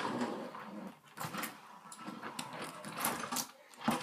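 Homemade BB-8 droid rolling on carpet, its drive robot running inside the fiberglass-and-papier-mâché ball: a quiet mechanical whir with irregular clicks and rattles from the shell.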